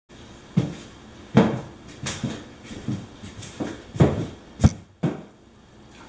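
Footsteps on a hard floor, about eight steps at a walking pace, ending about a second before the end, as a person walks into place in a small room.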